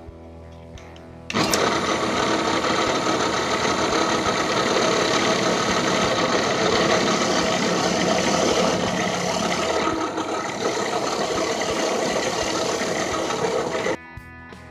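Drill press running with a bolt spinning in its chuck while a flat file is held against the bolt head, a loud steady hum and rasping scrape of metal being filed. It comes in suddenly about a second in and cuts off at the end.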